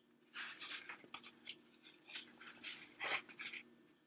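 A plastic DVD case being handled and turned in the hands: a string of short scraping, rubbing sounds, the loudest about three seconds in, over a faint steady hum.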